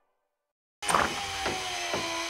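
Silence, then about a second in an electric power tool starts running with a steady motor whine whose pitch sags slightly.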